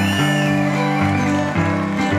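Live blues on guitar: an instrumental passage of sustained notes that change about every half second.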